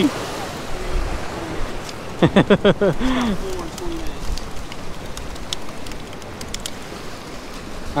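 Surf washing against the rocks of a jetty, a steady rush of water, with a short burst of a voice about two seconds in and a few light clicks later on.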